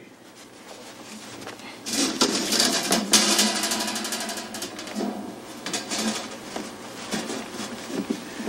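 Rustling and rapid clattering handling noise as a small bird is put into a glass tank. It starts about two seconds in, is loudest soon after, and tapers off toward the end.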